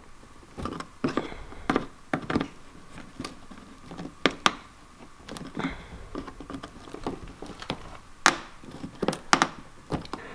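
Flathead screwdriver prying and scraping at a dirt-packed plastic push-pin clip in a car's plastic wheel-well liner: irregular small clicks and scrapes of metal on plastic as the clip is worked loose.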